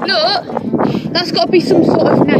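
Children's high-pitched squealing laughter, in short wavering cries one after another.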